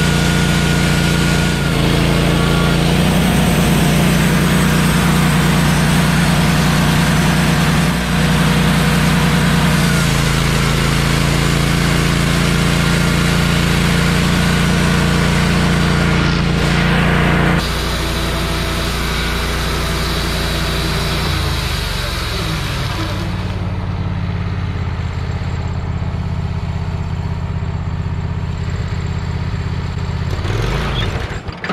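Wood-Mizer LT15 portable band sawmill running, its engine under load as the band blade cuts through a pine cant. About two-thirds of the way through the sound drops and changes as the cut ends, and the engine runs on more lightly.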